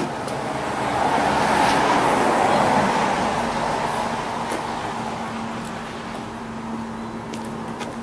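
A vehicle passing on a wet street, its tyre hiss swelling to a peak about two seconds in and then fading, with a steady low hum underneath in the second half.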